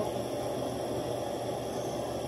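Steady room noise and hiss from a phone's microphone, with no distinct event.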